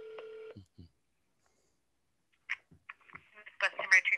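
Telephone ringback tone (the ringing heard by the caller), a steady low tone that stops about half a second in. After about two seconds of quiet, a few clicks and a voice over the phone line come in near the end as the call is answered.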